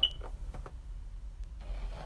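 Hairbrush stroking through a mannequin head's long hair: a few faint clicks early on and a soft rustling stroke near the end, over a low steady hum. A short, sharp, high-pitched ping right at the start is the loudest sound.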